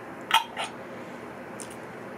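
Two quick, short mouth and throat noises from a man, a quarter second apart near the start, the first louder, over a steady faint room hiss.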